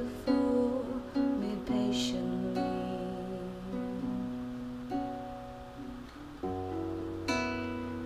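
Acoustic guitar chords strummed and left to ring, changing every second or so, under a single sung word at the start.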